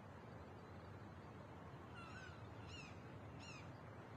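Faint outdoor ambience with a small bird chirping three times in the second half, each a short call falling in pitch.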